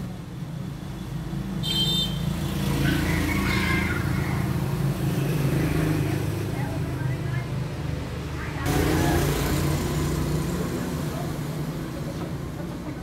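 Steady low rumble of motor-vehicle engines running close by. It swells about two seconds in and again, more suddenly, near nine seconds.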